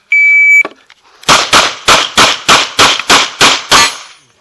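A shot timer's start beep, one steady high tone about half a second long. About a second later a 9 mm production-division pistol fires about nine shots in quick succession, roughly three a second, in an IPSC stage run from a table start.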